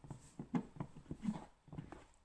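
A quick, uneven run of short knocking and rubbing strokes as a hand tool is worked over tint film on a car's rear window glass.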